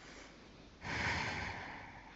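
A person's forceful breath out, starting suddenly a little before halfway and fading over about a second.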